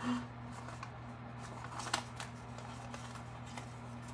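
Coral cardstock handled by hand and a die-cut piece worked free of it, with a few faint paper clicks and rustles over a low steady hum.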